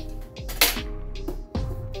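Background music, with one sharp clack about half a second in as a plastic box cutter is set down on a wooden table.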